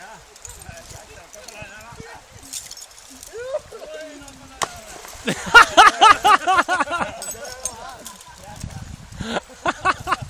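A person's voice giving a loud, quick string of whooping calls from about five to seven seconds in, with quieter voices before and after. The rush of a fast-flowing river runs underneath.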